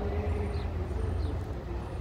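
Distant city road traffic: a steady low rumble with the faint, wavering drone of a vehicle engine.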